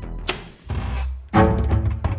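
Dramatic background music with low bowed strings: the beat drops out, a low swell builds, and a sharp hit lands a little over a second in.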